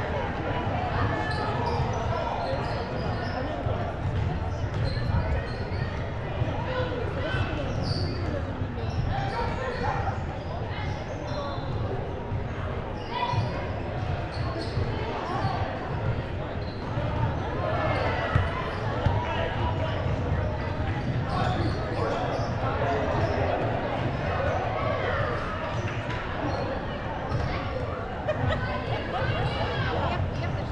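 Chatter of many voices in a large gym during a break in play, with a basketball bouncing now and then on the hardwood floor.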